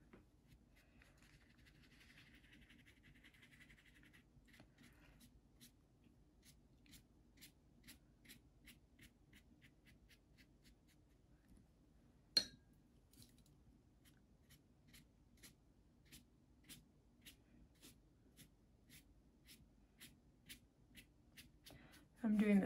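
Faint sound of a watercolour brush brushing across wet paper for the first few seconds, then a faint, regular ticking about twice a second, with one sharper click about twelve seconds in.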